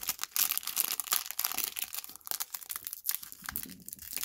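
A foil trading-card pack wrapper crinkling and crackling in the hands as it is squeezed and worked at the top seal, with quick irregular crackles throughout.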